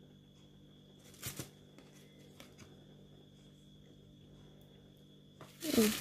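Paper and card being handled: a short double rustle about a second in and a few faint ticks, over quiet room tone.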